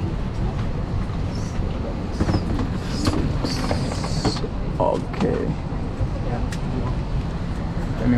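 Airliner cabin during boarding: the steady low rumble of the cabin air system, with scattered clicks and knocks from luggage and overhead bins and faint voices of passengers. A brief hiss comes a little past three seconds in.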